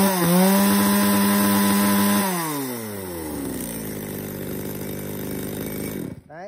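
Echo Kioritz CSVE3502G chainsaw's two-stroke engine revving with no cut being made. After a last throttle blip it holds high revs for about two seconds, then the pitch falls away to a steady idle.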